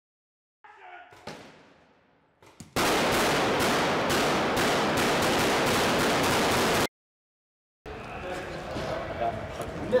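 Rapid automatic gunfire, a dense volley of shots lasting about four seconds that cuts off abruptly. It follows a single sharp bang with an echoing tail about a second in.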